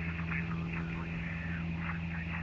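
Steady low drone of a single-engine light aircraft's engine and propeller in cruise, heard inside the cabin, with faint voices underneath.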